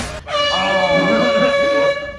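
A loud, steady horn-like blast on one held pitch, starting about half a second in and stopping abruptly at the end.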